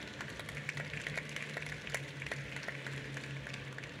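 Audience applauding: a light patter of clapping that thins toward the end.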